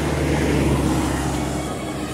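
A small pickup truck driving past along the road, its engine and tyre noise swelling and then fading as it moves away.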